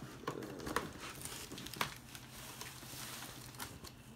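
Cardboard box and its packing being handled and opened: crinkling and rustling, with a few sharp clicks and knocks.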